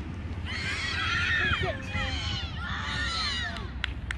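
Several high-pitched children's voices shouting and calling out, overlapping, in three stretches with short breaks between them. A steady low rumble runs underneath, and a couple of sharp clicks come near the end.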